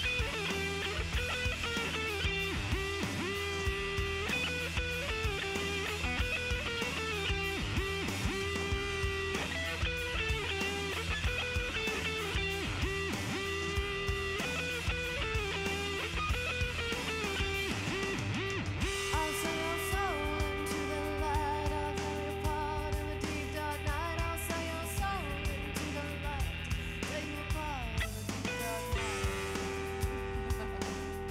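A live rock band playing, with electric guitar to the fore over a steady beat; the arrangement changes about two-thirds of the way through, and a woman's voice sings near the end.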